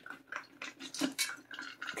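Puppies eating dry kibble from stainless steel bowls: a quick, irregular run of clinks and rattles of food and muzzles against the metal bowls.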